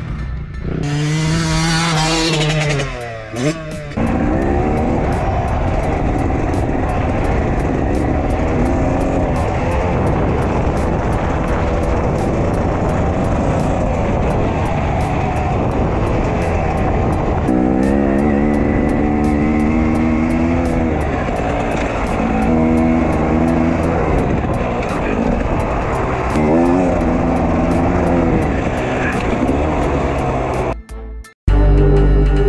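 Beta 300RR two-stroke single-cylinder engine being ridden, its revs rising and falling over and over, with wind noise on the microphone.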